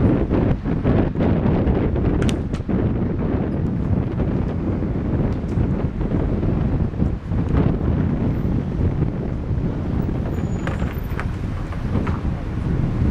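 Wind buffeting the camera's microphone on the open top deck of a moving tour bus: a steady low rumble of noise, with a few brief knocks.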